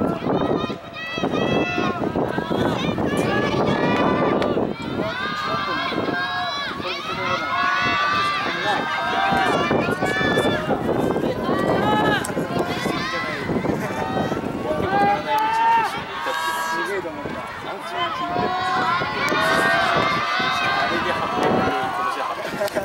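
Several voices at the trackside shouting encouragement to passing middle-distance runners, the calls overlapping with hardly a break.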